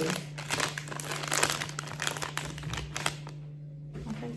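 Plastic gummy-candy bag crinkling as fingers rummage inside it, irregular and busy for about three seconds, then dying away.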